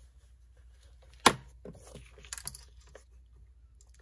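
Sheet of paper being shifted and smoothed by hand on a paper trimmer, with one sharp click about a second in, then a few soft taps and rustles.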